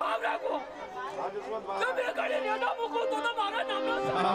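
Several people's voices talking and shouting over one another, with one man's loud shouting among them.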